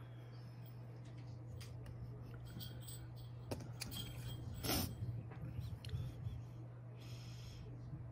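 Quiet handling sounds of trimming polymer clay: a long clay blade and the clay disc clicking and tapping against a hard work surface, with one louder knock a little past the middle. A steady low hum runs underneath.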